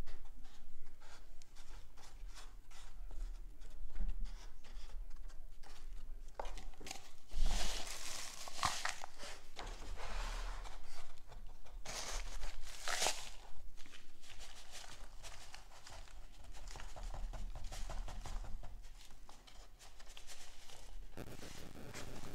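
Hand work filling cardboard egg-carton seed cells with potting soil from foam cups: soil scraping and spilling, cups and cardboard rustling and crinkling, in many small scrapes and clicks. Two louder rustling stretches come about seven seconds in and again about twelve seconds in.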